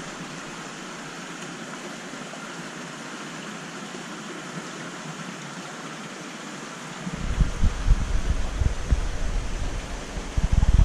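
Steady rushing hiss of background machinery and water in the room around a large aquarium. From about seven seconds in, irregular low rumbling thumps join it.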